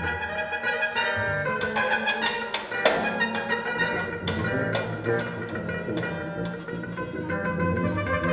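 Free ensemble improvisation: low held tuba notes under sustained higher pitched tones from winds and bowed strings, with a few sharp struck accents around the middle.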